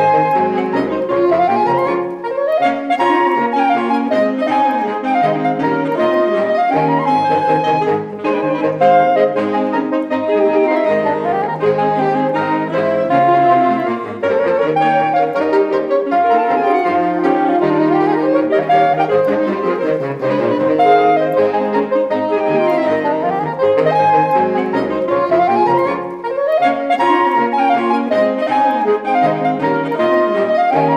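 Saxophone ensemble, soprano down to baritone, playing a fast circus march, with quick runs that rise and fall in pitch over and over.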